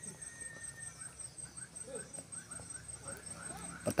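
Faint open-air ambience at a football pitch: distant shouts and calls of players and onlookers over a steady, high-pitched pulsing trill, with a single click near the end.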